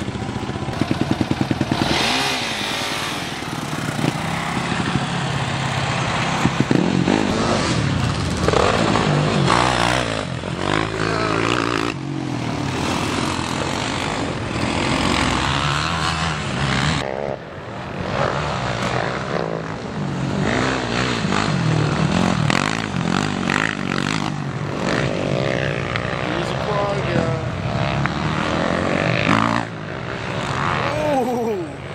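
Quad and dirt bike engines running and revving, rising and falling in pitch, with a voice over them.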